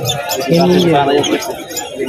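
People talking, with small caged birds chirping in the background.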